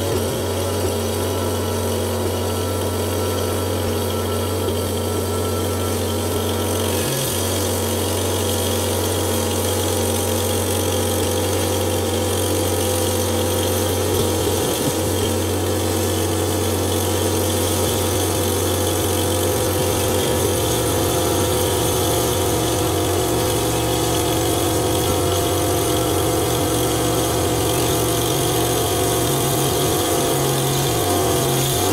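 1987 Wood-Mizer LT40 portable bandsaw mill running steadily, its engine and band blade sawing lengthwise through a maple log. A faint high tone drops away about seven seconds in.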